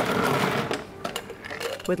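Ice cubes poured from a scoop into a stainless steel cocktail shaker tin: a dense clatter for about the first second, thinning to scattered clinks as the cubes settle.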